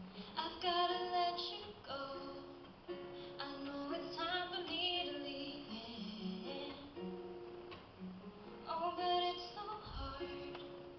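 A woman singing a slow song, accompanying herself on acoustic guitar, with louder sung phrases about a second in, around the middle, and again near the end.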